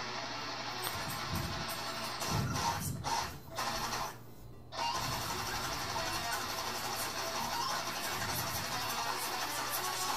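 Distorted seven-string electric guitar playing a fast, tightly picked technical death metal riff with pinch harmonics. About four seconds in it drops briefly in level before picking back up.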